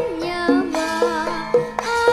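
A young girl singing a Javanese song in sinden style through a microphone, her voice wavering in pitch, over a live gamelan ensemble with regular drum strokes.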